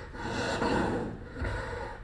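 Breathy vocal gasps and exhalations, two swells of breath in quick succession.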